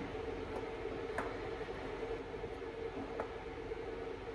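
Quiet room tone with a steady low hum and a few faint ticks and clicks from hands working the wires and nickel-tabbed 18650 cells of a lithium-ion tool battery pack as it is pulled apart.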